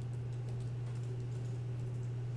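Computer keyboard being typed on, a quick run of light keystrokes as a search term is entered, over a steady low electrical hum.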